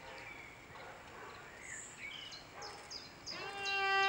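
A pause in slow cello playing with a few faint bird chirps. About three seconds in, the cello comes back in with a long bowed note.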